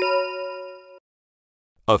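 A bell-like chime sounds once, several steady tones ringing together and fading out after about a second. It works as a transition sound effect for a title card.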